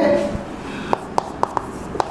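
Chalk writing on a chalkboard: a quiet stretch followed, from about a second in, by a run of about five short, sharp taps as the letters are written.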